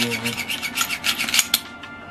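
The slide of a Glock 19-pattern pistol being worked by hand: steel scraping along the frame rails in a quick run of rasping clicks that lasts about a second and a half. The action runs real smooth.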